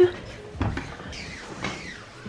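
Footsteps climbing wooden stairs: a sharp knock at the start, then two softer thuds about a second apart.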